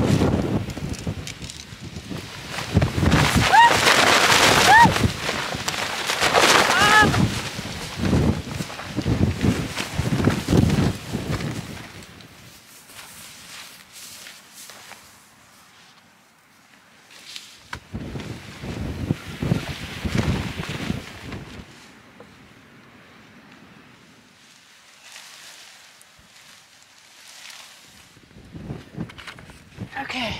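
Strong wind gusting across the microphone and flapping the nylon fly of a backpacking tent as it is pitched. The wind is loud through the first dozen seconds, eases off, and comes back in another gust about two-thirds of the way through.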